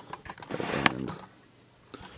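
A short rustle of clear plastic packaging being handled, with one sharp click just before a second in, then quiet.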